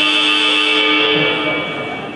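Basketball arena scoreboard buzzer sounding one long, steady, loud electronic tone that dies away in the second half.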